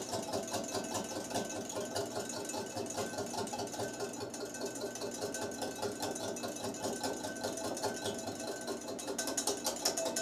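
Wire whisk beating quickly and steadily against a glass mixing bowl, a fast even clatter, as oil is drizzled in to emulsify a mustard vinaigrette.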